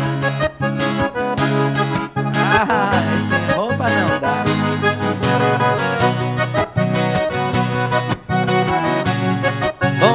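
Instrumental break in a sertanejo song: a piano accordion plays the melody over a strummed steel-string acoustic guitar.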